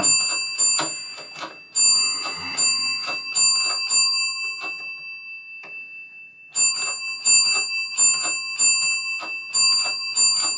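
Spring-metal wiper fingers of a 1972 Williams pinball match unit being turned by hand across the contacts of its stepper board, clicking from contact to contact several times a second with a thin metallic ringing. The clicking thins out for about a second and a half midway, then picks up again.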